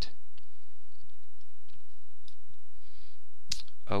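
A few faint, scattered computer mouse clicks as a chart is dragged across the screen, over a steady low background noise.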